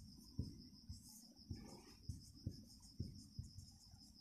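Faint sounds of a marker writing on a whiteboard: irregular light taps of the tip on the board and a brief scrape. A steady, high, pulsing chirr runs behind it.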